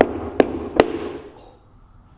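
Rubber mallet knocking a surfboard fin down into a sand-clogged fin box: three sharp knocks in quick succession, about two and a half a second, in the first second.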